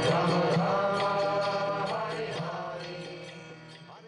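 Devotional chant sung over a steady drone with light percussion, fading out gradually.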